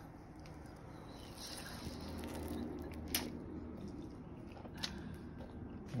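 A person faintly chewing a mouthful of soft cooked egg roll, with two sharp clicks, about three and five seconds in.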